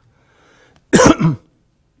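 A man coughs once, a short sharp cough about a second in.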